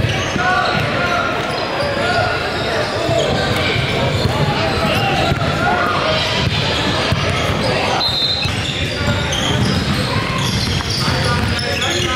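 A basketball bouncing on a hardwood gym floor among many overlapping voices, with the chatter echoing in a large hall.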